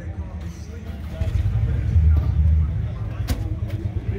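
Voices of people talking in the background, over a low rumble that comes and goes, with two sharp clicks a little after three seconds in.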